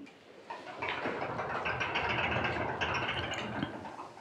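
Steady rustling and shuffling of a group of people moving out of a yoga pose on their mats, lasting about three seconds.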